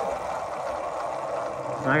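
Wind and rolling noise from riding a Talaria Sting R electric dirt bike, an even hiss, with a low steady hum coming in near the end.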